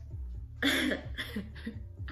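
A girl laughing into her hand: one strong burst about half a second in, then a few shorter, fading ones.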